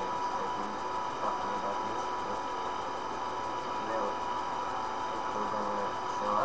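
Steady background hiss with a thin, constant tone, and faint, indistinct voices in the background.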